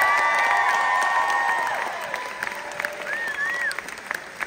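Concert hall audience applauding and cheering with whoops, dying down over the last couple of seconds.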